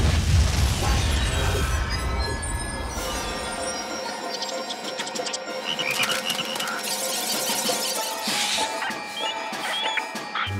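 Cartoon sound effect of a sonic rainboom: a sudden loud boom whose deep rumble dies away over about four seconds. Frightened animals then squeak and call in short high cries, over orchestral background music.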